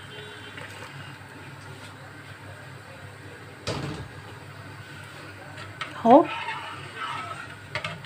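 Freshly boiled milk being poured from a metal cooking pot into a wide pan of soaked rice, followed by a single knock a little before halfway through as the pot is put down.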